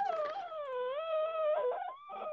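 A dog howling in the background: one long, wavering, high-pitched call that falters briefly near the end.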